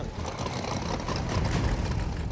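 Steady noise of car engines running, with no clear pitch.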